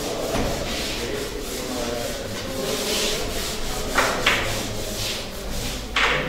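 Handheld whiteboard eraser rubbed back and forth across a whiteboard, wiping off marker writing: a continuous scrubbing that swells and fades with each stroke, with a sharper stroke about four seconds in.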